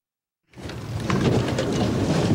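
Stainless-steel elevator doors being forced apart by hand: a heavy rumble with rattling clatter that starts suddenly about half a second in.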